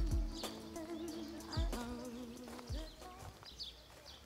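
Background music: a held, wavering melody line shifting between a few notes over deep bass hits that drop in pitch.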